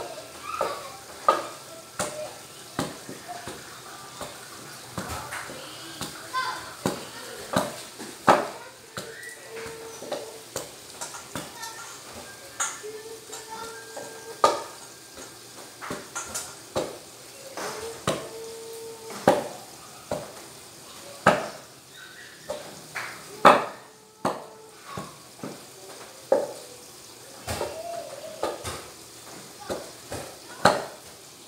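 Wooden pestle pounding boiled bananas into a mash in a stainless steel pot: irregular thuds roughly once a second, some with a knock from the pot.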